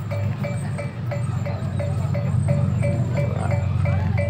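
A small metal percussion tone struck in an even rhythm, about three strikes a second, over a steady low hum.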